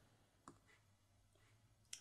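Near silence with two faint clicks, one about half a second in and one just before the end: a stylus tapping on a writing tablet.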